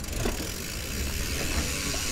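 Mountain bikes rolling slowly, a steady hiss of tyre and wind noise with a low rumble on the camera microphone, with faint clicking from a coasting freehub.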